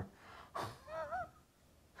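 A man's breathy, stifled laugh: a sharp exhale about half a second in, followed by a short wavering voiced sound that rises and falls twice.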